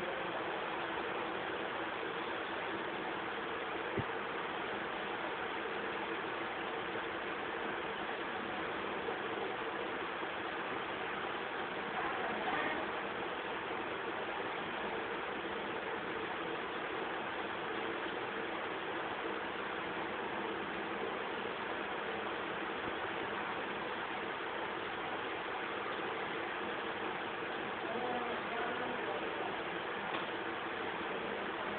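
Steady, even hiss like static, with no distinct sounds in it apart from a single faint click about four seconds in.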